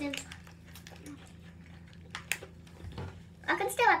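Scattered small crunches and rustles from biscuits being bitten and chewed and a snack packet being handled, over a low steady hum. A voice comes in near the end.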